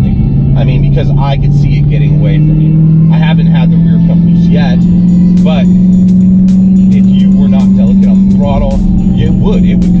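Dodge Challenger SRT Hellcat's supercharged 6.2 L V8 heard from inside the cabin while driving: a steady deep drone whose pitch climbs gently over the first few seconds and eases off slightly near the end. Music with wavering pitched notes plays over it.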